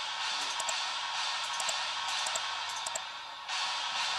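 A synthesized noise sound effect from a progressive house track playing back in the DAW: a steady hiss-like wash with its lows rolled off. It cuts out briefly near the end, then comes back.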